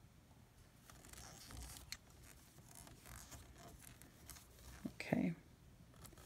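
Faint rustling and scraping of cotton T-shirt yarn being wrapped around plastic loom pegs and lifted over with a metal loom pick, with a few light clicks.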